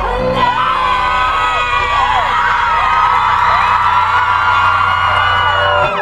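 Concert crowd cheering and whooping, many voices overlapping, over a held keyboard chord from the stage's sound system.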